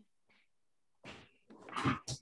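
Near silence for about a second, then faint rustling sounds building to a short, rough vocal burst just before the end.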